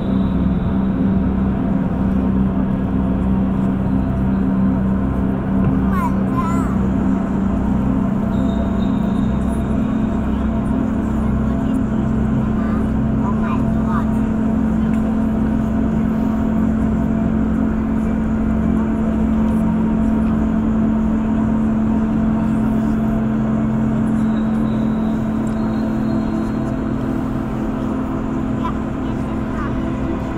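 A steady low droning hum with several faint sustained tones above it and indistinct voices, echoing in a huge reverberant hall.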